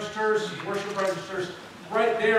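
Only speech: a man talking into the pulpit microphone.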